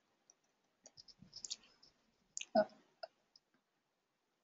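Faint scattered clicks, with one brief vocal sound about two and a half seconds in.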